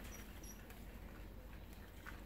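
Puppies eating dry kibble from a bowl, heard faintly as soft chewing and patter, with two brief high squeaks in the first half second.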